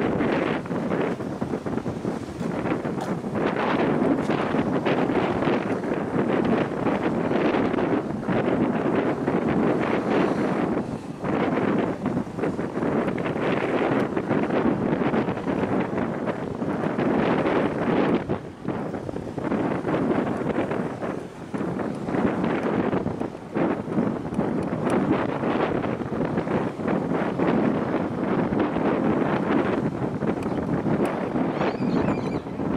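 Wind buffeting the camera's microphone in gusts, a loud rushing noise that drops away briefly a few times.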